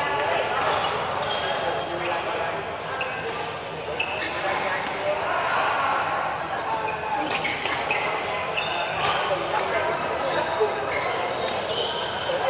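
Badminton rackets striking shuttlecocks and players' shoes on the court, irregular sharp hits over a background of voices, echoing in a large hall.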